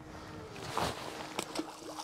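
A small snapper is dropped back over the side of the boat and lands in the sea with a light splash about a second in, over water lapping against the hull. A sharp click follows, with a faint steady hum underneath.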